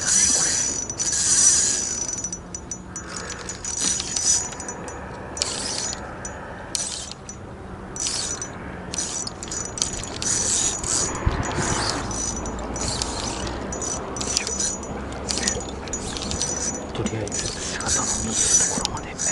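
Daiwa Revros 1000-size spinning reel being cranked in spells with short pauses, its gears whirring and ticking as line is wound in.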